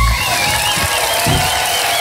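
Studio audience applauding and cheering as the band's final chord stops, just after the start.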